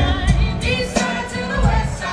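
Live music with singing, amplified through PA speakers: sung melody over the band, with heavy bass notes.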